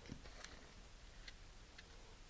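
Near silence with a few faint small ticks and rustles, a cluster in the first half second and two more later, from a folded paper and a rubber-glove fingertip being handled as sand is poured into it.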